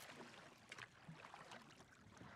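Near silence: faint background hiss, with a few very soft small sounds.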